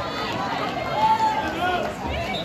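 Several people shouting and calling out at once across the pool, the words not clear.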